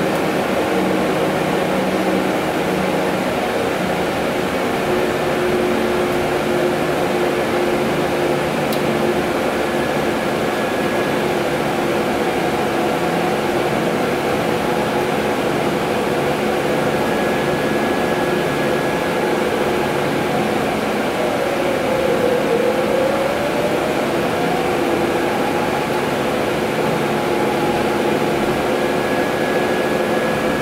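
Cabin noise of a Proterra ZX5 battery-electric transit bus on the move: steady road and tyre noise under several steady whines from the electric drive and ventilation. About two-thirds of the way through, one whine dips in pitch and climbs back.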